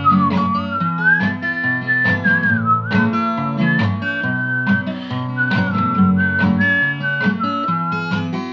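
A man whistling the melody over a strummed acoustic guitar: the whistle is one clear, pure note stepping and sliding from pitch to pitch, while the guitar chords are strummed steadily beneath it.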